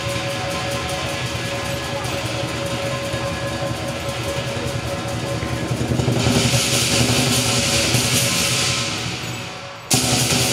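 Southern lion dance percussion band playing: a big lion drum beaten with clashing cymbals and a ringing gong. The cymbals grow louder from about six seconds in. Near the end it briefly fades, then a sharp, loud strike lands.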